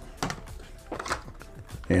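A few light clicks and taps of a clear hard plastic phone case being handled and turned over in the hands, over a low steady hum.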